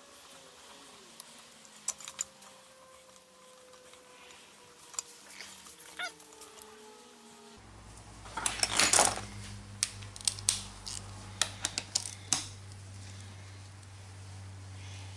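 Two-jaw gear puller turned by hand to draw the clutch pulley off an A/C compressor's snout: scattered metal clicks and clinks, with a louder rustle of handling about eight to nine seconds in. The pulley comes off without much force.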